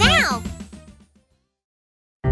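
End of a children's promo jingle: a cartoon character's high call rises and falls over the music, then everything fades out about a second in, leaving silence.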